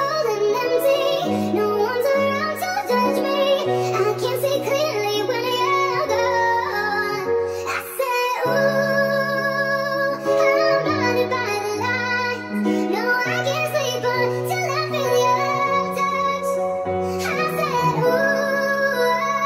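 Nightcore pop song: a sped-up, pitched-up female vocal sung over a synth-pop backing of held chords and a stepping bass line, with a brief drop-out of the bass about eight seconds in.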